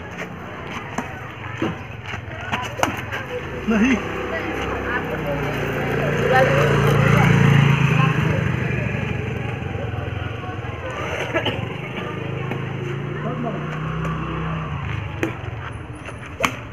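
A motor scooter passes, its engine growing louder to a peak about seven or eight seconds in and then fading away. Sharp taps of badminton rackets striking the shuttlecock are heard in the first few seconds and again near the end.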